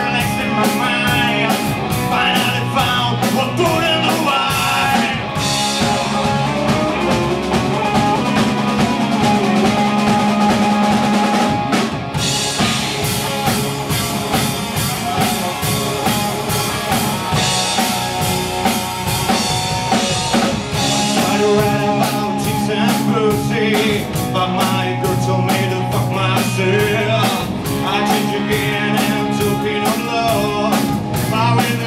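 Rock band playing live: drum kit with a steady beat, distorted electric guitars and bass guitar. The sound grows brighter and denser from about five seconds in.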